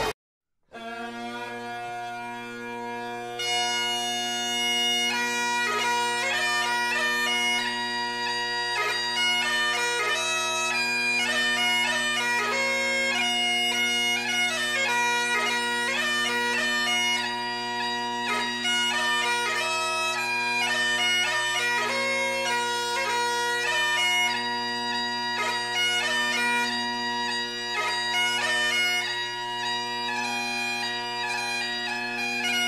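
Pipe bands playing Great Highland bagpipes. After a brief silence the steady drones sound alone, and the chanters take up the tune about three seconds in.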